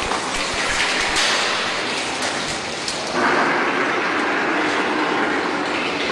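Cooling water rushing out of the mixing machine's discharge hose and splashing, a steady noise that grows louder about three seconds in.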